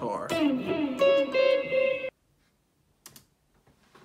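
Electric guitar played, a few plucked notes ringing, cut off abruptly about two seconds in; after that near silence with a few faint clicks.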